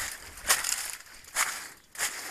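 Dry banana leaves and leaf litter rustling and crunching in a few short bursts as someone pushes through a banana patch.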